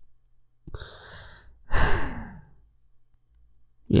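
A man sighs close to the microphone: a breath in about a second in, then a louder sigh out that falls in pitch.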